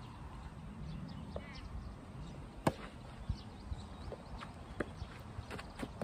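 A soft tennis rally: a racket strikes the rubber ball once sharply a little under halfway through, followed by fainter knocks of the ball bouncing and feet moving on the clay court.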